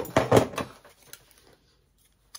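A short clatter and rustle of things being handled on a work table in the first half-second, a few faint ticks after it, then quiet.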